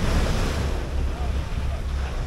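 Wind buffeting the microphone in a steady low rumble, over the rush of sea water along the hull of a boat under way.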